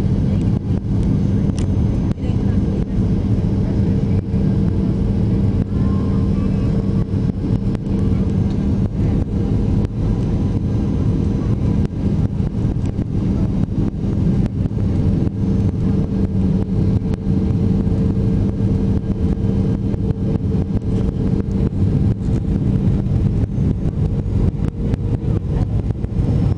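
Jet airliner cabin noise during the landing approach: a loud, steady rumble of engines and airflow with a constant low hum underneath.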